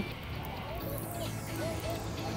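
Faint background of a public playground: scattered voices and a steady low hum of traffic.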